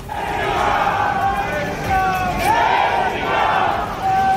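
A large crowd of protesters shouting slogans together, many voices drawn out on long calls over a loud, continuous din.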